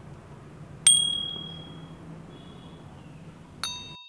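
Two ding sound effects from a subscribe-button animation. About a second in, a sharp click with a single high ringing tone dies away over about a second. Near the end comes a second click with a brighter chime of several tones, as the notification bell is tapped.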